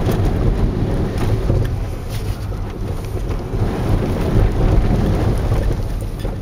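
Car driving through shallow water, heard from inside the closed cabin: a steady low rumble of engine and tyres with water washing against the underside, broken by a few short splashes.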